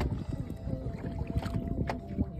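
Wind buffeting the microphone over water lapping against the hull of a fibreglass boat at sea, with a faint steady hum and a couple of small knocks near the end.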